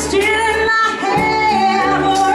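A woman singing lead over a live band of keyboard, electric guitar, electric bass and drums, with a steady drum beat; about halfway through she holds one long note.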